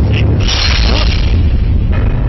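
Film soundtrack effect: a loud, deep bass boom that holds through, with a burst of hiss swelling about half a second in.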